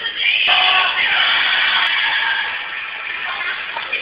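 Film soundtrack music and voices over a theatre's speakers, loud and muffled, recorded through a low-quality phone microphone that cuts off the high end.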